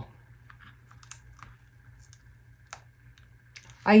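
Faint, scattered small clicks and ticks of a metal weeding hook picking at and lifting cut adhesive vinyl on a plastic cutting mat, the clearest tick about two-thirds of the way through.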